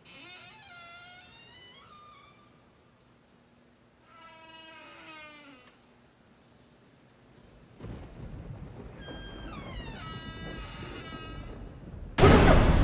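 Suspense underscore: three eerie stacks of falling tones, each lasting a second or two, then a low rumbling swell that builds from about eight seconds in.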